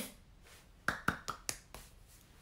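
A quick run of about five light taps, starting about a second in, roughly five a second.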